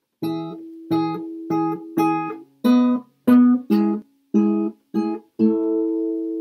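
Acoustic guitar with a capo, strummed: about ten chord strums in a choppy rhythm, several stopped short before the next, and a last chord near the end that is left ringing.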